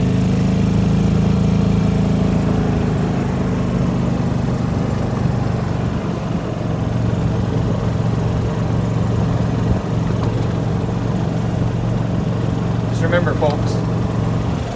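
A gas Club Car golf cart's small engine running while the cart drives along, its pitch dropping after the first few seconds as the revs ease off.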